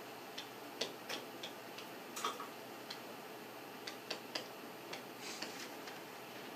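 Light, irregular clicks and taps of a pen stylus on a writing surface while a short line of text is written by hand, about a dozen over the few seconds.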